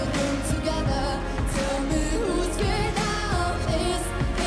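A young woman singing a pop song live into a microphone, with instrumental backing and occasional drum hits.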